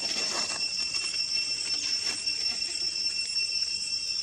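Steady, high-pitched buzzing drone of insects in the forest canopy, holding two constant tones, with a few brief rustles near the start and about two seconds in.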